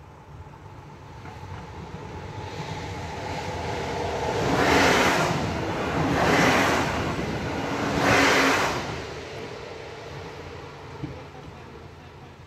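Electric passenger train passing over a level crossing at speed: the rail noise builds as it approaches, comes in three loud surges of wheel-on-rail noise about a second and a half apart as the coaches go by, then fades away.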